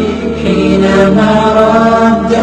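Chanted vocal music: a voice sings long, held notes that bend slightly at the ends of phrases.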